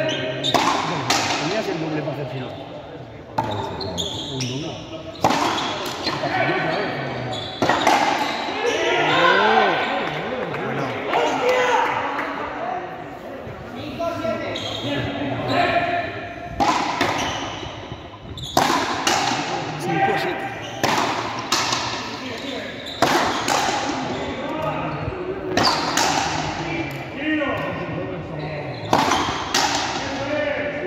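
Frontenis rally: the rubber ball struck by rackets and smacking off the front wall and floor in sharp, irregular hits, each echoing through the large hall. People talk in the background.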